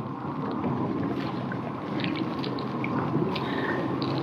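Water washing along the hull of a moving pedal kayak, with wind noise on the microphone and a few faint clicks.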